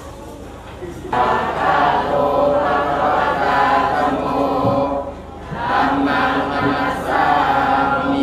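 A congregation of kneeling Buddhist laypeople chanting together in unison, led over a microphone by one man. The chant starts about a second in, on long held notes, and breaks off briefly past the middle before going on.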